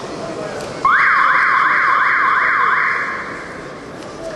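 A loud siren-like wail cutting in suddenly over arena crowd noise, sweeping up and down about three times a second for roughly two seconds before fading.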